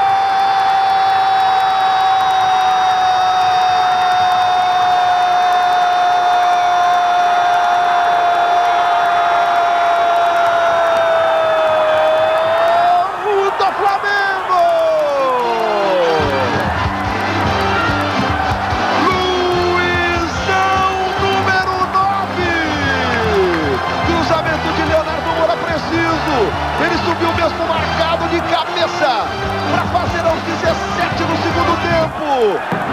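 A television football commentator's long held goal cry: one unbroken high shout for about thirteen seconds that falls away near the end. It is followed by music with a steady low beat and more shouted commentary.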